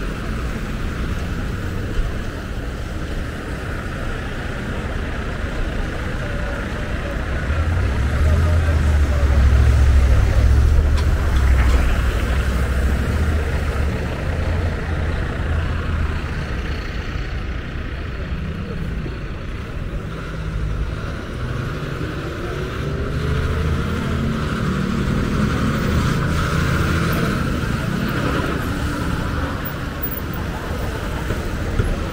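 City intersection traffic on a wet road: car and truck engines running and tyres hissing on wet asphalt, with a heavy truck's low rumble loudest about a third of the way in.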